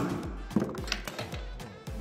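Hammer blows driving a wooden peg into a drilled hole in a timber-frame joint: one sharp strike at the start, then a couple of lighter knocks, as the peg's end splits and mushrooms instead of going in. Background music with a steady beat plays underneath.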